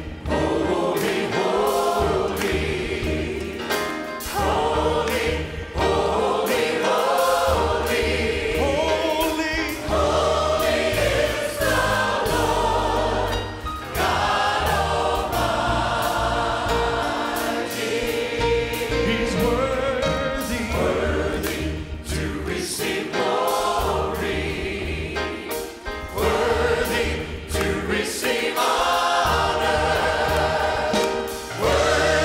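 Praise team and choir singing a gospel worship song with band backing, a male worship leader singing lead on microphone.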